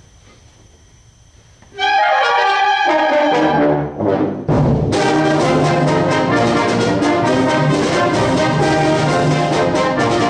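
After a quiet pause, a concert band comes in loudly about two seconds in, brass to the fore. A falling run of notes comes first, then a short dip, then the full band plays on.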